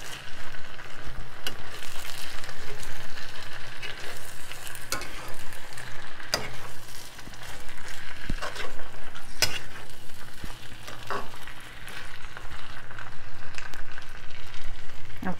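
Saltfish (salted cod) with onion, tomato, scallion and pepper frying in vegetable oil, sizzling steadily, while a utensil stirs and now and then clicks and scrapes against the pan.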